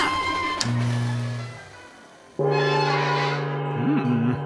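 Cartoon soundtrack music and effects: a sharp click followed by a low gong-like tone that fades away, then after a short lull a sudden loud held chord. A short rising-and-falling voice sound comes near the end.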